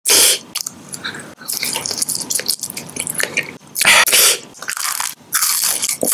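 Close-miked biting and chewing of soft gummy candy: sticky mouth clicks and crackles, with two louder bursts of noise at the very start and about four seconds in.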